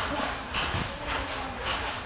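Silk or cotton sarees being lifted and shuffled by hand, a rough rustling of cloth, with faint voices behind it.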